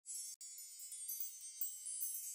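High-pitched chimes shimmering in a quick run of light strikes that ring on and overlap, a sparkle-style intro sound effect; the sound cuts out for an instant just after it starts.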